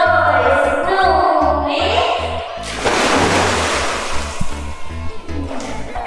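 Upbeat background music with a steady beat. About three seconds in, a big splash as two children jump into a pool, with water churning for about two seconds after.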